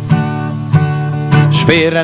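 Acoustic guitar strummed between sung lines, with a fresh chord struck about every two-thirds of a second and ringing on. A singing voice comes in near the end.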